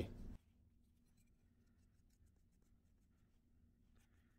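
Near silence, with faint light scratching of a wooden modeling tool worked over soft clay.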